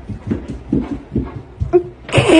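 Dogs' paws thudding on carpeted stairs as a Great Dane and a smaller dog go down: a run of dull, uneven thumps.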